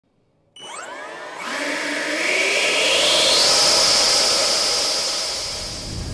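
Schubeler electric ducted fans of a large RC B-58 Hustler model spooling up: starting suddenly about half a second in, a rising whine over rushing air that climbs to a high steady pitch, loudest around the middle and easing slightly near the end.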